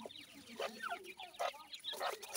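Small game-bird chicks peeping in quick, short falling chirps, mixed with low clucking calls and a few sharp clicks.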